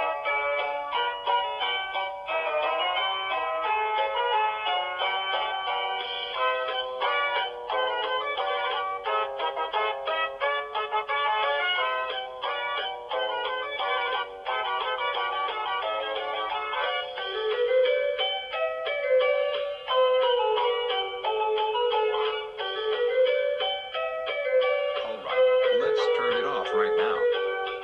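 Cheerful instrumental music with a quick, plucked-string melody of short notes; about two-thirds of the way in, a more sustained melody line comes in beneath it.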